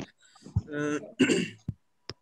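A man clearing his throat: a short voiced hum about half a second in, then a harsher rasp.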